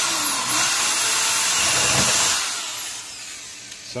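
Power drill with a half-inch spade bit boring a hole through the plastic wall of a gas can; the motor runs steadily at first and turns quieter about two and a half seconds in.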